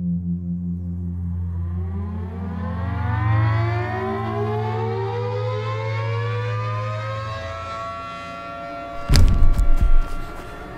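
A siren winding up, its pitch rising slowly over several seconds and levelling off into a steady wail, over a low drone that fades away. About a second before the end, a run of loud, sharp thuds cuts in.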